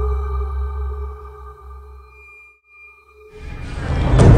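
Dark soundtrack music: held tones over a deep low bass drone that fade out about two and a half seconds in. After a brief gap, a noisy rising swell builds near the end.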